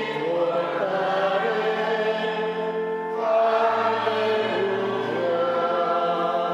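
Choir singing a closing hymn in long held chords, moving to a new chord just after the start and again a little past halfway.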